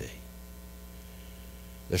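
Steady low electrical mains hum from the microphone and sound system.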